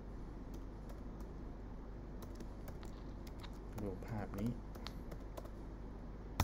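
Typing on a computer keyboard: a run of irregularly spaced keystroke clicks.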